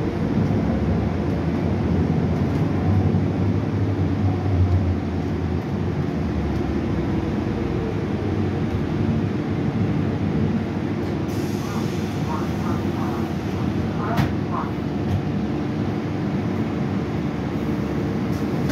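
Cabin sound of a 2015 Gillig 29-foot hybrid bus under way: the steady low rumble of its Cummins ISB6.7 diesel and Allison hybrid drive mixed with road noise, a little stronger in the first few seconds. A faint hiss comes in about eleven seconds in, and two sharp knocks come about three seconds later.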